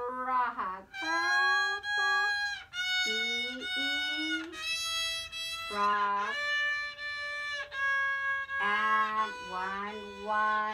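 A beginner's small violin playing a string of slow, long bowed notes, about one a second, in whole-bow strokes, with an adult voice sounding along with it.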